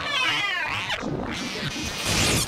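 Electro-acoustic noise collage: a warbling, cry-like high sound with a fast waver over a dense wash of noise. It fades into clattering noise after about a second.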